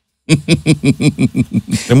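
A man laughing in a quick, even run of voiced bursts, about eight or nine a second, right after a joke.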